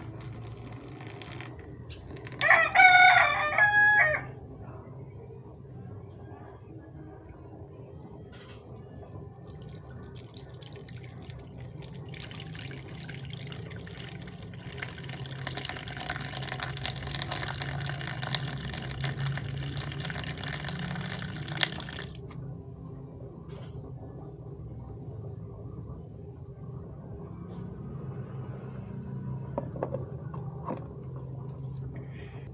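Dirty water poured from a plastic bowl into a basin, part of it through a fine mesh strainer, splashing on and off and heaviest for about ten seconds before it stops suddenly. A loud animal call about two seconds long comes a couple of seconds in, louder than the water.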